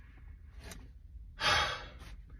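A man's short, breathy sigh about a second and a half in.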